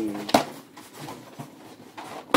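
A single sharp knock as a small cardboard bandage box is set down on a wooden table, followed by faint rustling of packaging.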